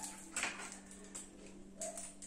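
A few faint clicks and rustles as a pair of scissors is picked up and snips at a small plastic packet to open it, over a steady low hum.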